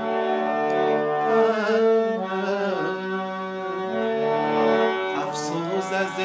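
A man singing a slow Afghan song in long held notes with wavering ornaments, over sustained instrumental accompaniment, with a few drum strokes near the end.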